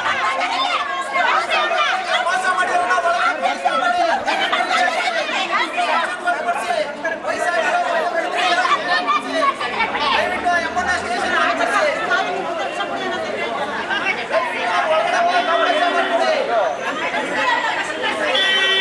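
A crowd of angry people shouting and arguing over one another all at once, loud and without a break.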